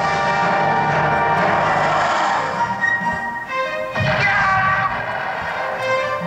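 Orchestral film-score music from a rapid montage of movie clips, the pieces changing with the clips. A sudden full-orchestra hit with heavy low drums comes about four seconds in.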